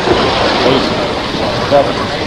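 Space Shuttle launch pad's sound-suppression water spraying beneath the main engine nozzles: a steady, rain-like rushing hiss in the final seconds before main engine start.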